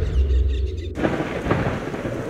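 Deep rumble of thunder that starts suddenly, with a hiss like rain joining about a second in.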